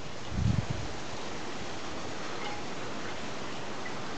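Steady outdoor background hiss, with a brief low rumble about half a second in.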